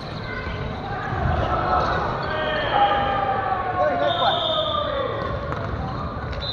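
Voices of players talking across a gymnasium, with a ball thudding on the wooden floor. A short, high, steady tone sounds about four seconds in.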